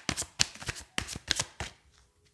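A deck of tarot cards being shuffled by hand: a quick, irregular run of sharp card slaps that stops shortly before the end.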